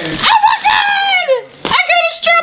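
A woman's high-pitched squeals of delight: one long squeal that slides down in pitch, then a second, shorter one near the end.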